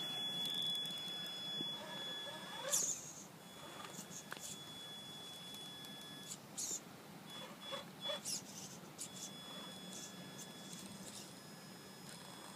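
Traxxas Summit RC rock crawler's electric drivetrain crawling slowly over wooden planks: a faint steady high whine with a few short scrapes and knocks.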